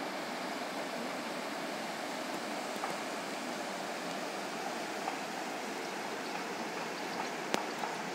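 Steady rush of a rocky mountain river flowing over stones, with one sharp click near the end.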